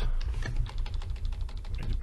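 Typing on a computer keyboard: a quick, steady run of key clicks.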